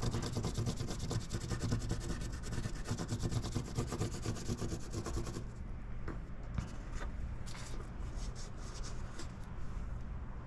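A cut-down pencil rubbing and scratching along the edge of a car badge through paper transfer tape, marking its outline: dense, rapid scratching for the first half, then shorter separate strokes. A low steady hum lies underneath.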